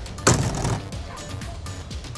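A front door slammed shut, one heavy bang about a quarter second in, over background music.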